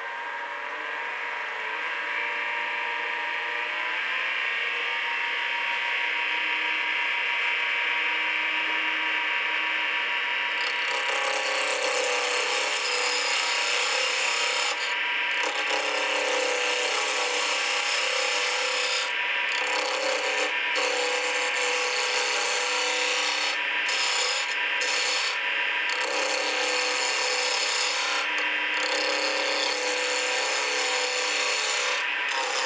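Wood lathe spinning a bocote pen blank, its whine rising in pitch over the first few seconds. About a third of the way in, a hand turning tool starts cutting the spinning wood: a steady, dense shaving hiss with several brief breaks where the tool lifts off.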